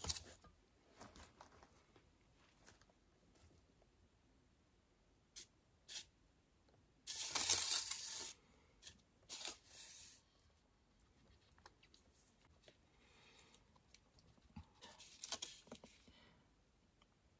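A hand-spun lazy susan turntable turning under a wet acrylic pour, giving a couple of clicks and a few short scraping noises, the longest about a second long near the middle, mostly quiet in between.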